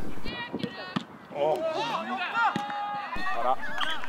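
Shouts and calls from people at an outdoor football match, picked up live on the pitch, some high and drawn out, with a brief knock about a second in.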